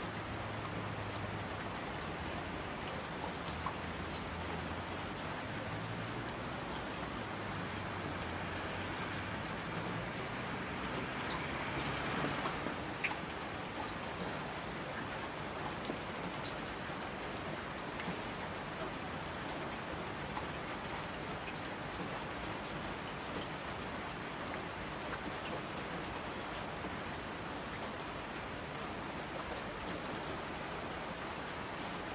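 Steady rain falling, an even patter with scattered sharp drop clicks. It swells briefly about twelve seconds in, and a faint low rumble sits under it for the first ten seconds.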